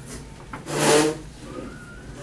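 A chair scraping across the floor once, about half a second in, as a child gets up from it, followed by a faint thin squeak.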